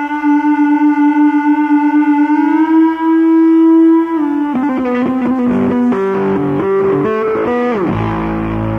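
Distorted electric bass solo. A long held note with vibrato bends up slightly and holds, then breaks into a run of quick notes about halfway through and ends with a downward slide.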